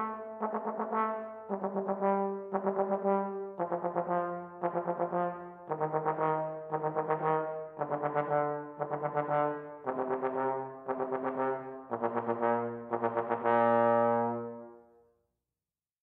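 Trombone playing a direct-attack warm-up: groups of short, separately tongued notes, each group a step lower than the last. It ends on a long held low note that fades out about fifteen seconds in.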